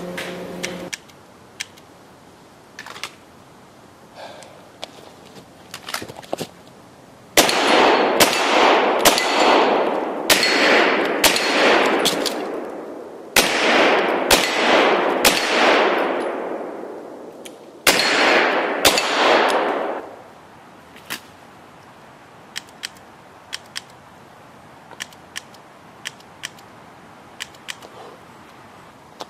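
Live pistol shots, about a dozen fired roughly one a second in three quick strings, each crack trailing a long echo. Light clicks come before and after the strings.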